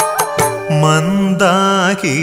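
Malayalam Hindu devotional song: a few percussion strokes, then, about two-thirds of a second in, a low male voice starts a held note that wavers in pitch.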